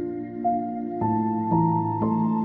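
Slow, gentle piano music: held notes, with a new note coming in about every half second.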